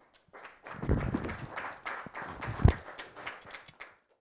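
A small audience clapping in a dense patter, with two heavier low thumps, about a second in and again past two and a half seconds. The clapping cuts off abruptly just before the end.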